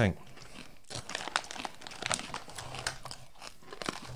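Pork scratchings being chewed close to the microphone: a run of irregular, crisp crunches.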